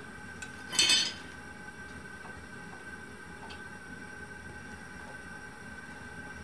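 A single short, ringing metallic clink of steel tongs striking metal about a second in, over the steady hiss of a propane gas forge running on a low, gas-rich flame.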